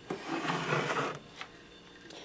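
Handling noise of metal microwave-oven parts on a wooden workbench: a knock, about a second of rubbing and scraping, then a light tap.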